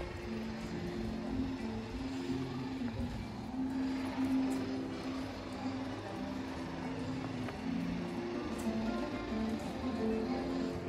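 Acoustic guitar played by a street busker, a melody of single picked notes, growing a little louder near the end.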